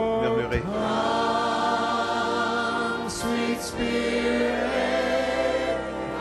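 Congregation singing together in worship, many voices holding long, gliding notes with no clear words.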